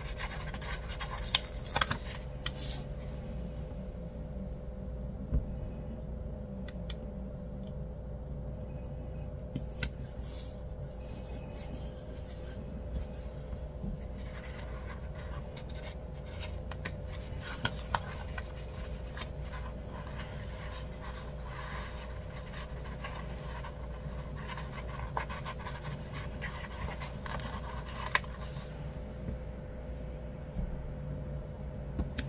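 Paper stickers and planner pages being handled: irregular rustling and scratching of paper, with scattered sharp taps as stickers are peeled off their sheet and pressed onto the page, over a steady low hum.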